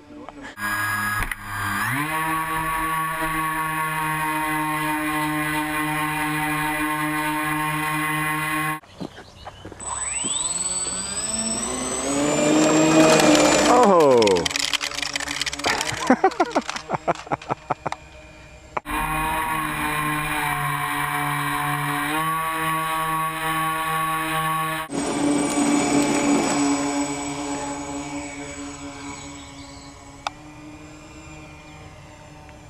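Electric motor and propeller of a foam RC cargo plane whining at a steady pitch, stepping up and down as the throttle changes. About halfway through the pitch climbs and then drops steeply as the plane passes close by at low height.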